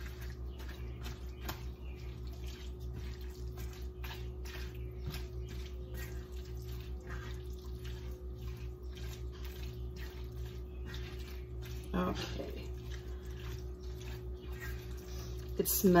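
Silicone spatula stirring a thick ground meat and tomato sauce mixture in a cast iron skillet: soft scrapes against the pan and wet squelching, many times over. A steady low hum, pulsing about twice a second, runs underneath.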